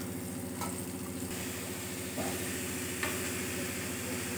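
Onion-tomato masala sizzling steadily in oil in a pan, with a few faint clicks of stirring, as boiled noodles are added to it.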